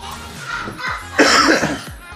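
A person coughing once, a short harsh cough about a second in, over quiet background music.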